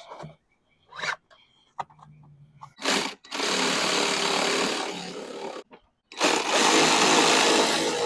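Ryobi cordless power ratchet running twice as it tightens a battery terminal nut, each run lasting two to three seconds, the first starting about three seconds in and the second about six seconds in. A few light handling clicks come before it.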